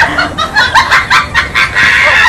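A comic sound effect of chicken-like clucking: a quick run of loud, high-pitched clucks, about three a second, ending in a held high note.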